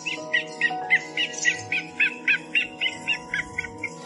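A rapid series of short, high bird-like chirps, about four a second, thinning out near the end, over background music with long held notes.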